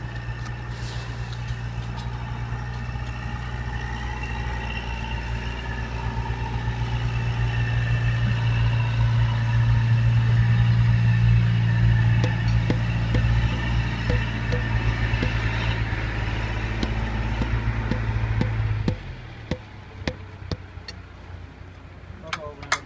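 An engine running steadily, growing louder over the first ten seconds or so, then cutting off suddenly about nineteen seconds in. A few light knocks follow.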